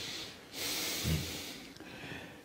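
A man drawing a noisy breath in, lasting about a second.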